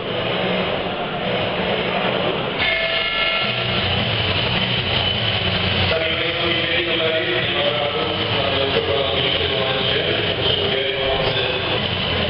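Loud, steady crowd din in a fight hall, with a held pitched sound entering about three seconds in and further pitched notes over the noise in the second half.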